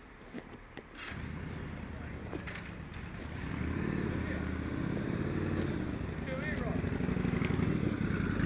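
A motorcycle engine comes in suddenly about a second in and keeps running, getting louder from a few seconds in.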